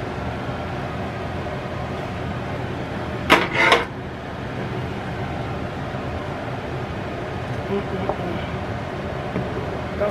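Two quick clinks a little over three seconds in, from the lid of an electric skillet being set down, over a steady background hiss; a wooden spoon stirs the chili faintly near the end.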